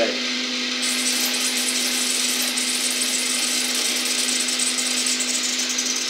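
Vibratory Ulka pump of a Tria Baby (Saeco Baby) espresso machine buzzing steadily while it pushes water out through the open steam wand, with a hiss that sets in about a second in. This is the aluminium boiler being refilled after it was emptied by steaming milk.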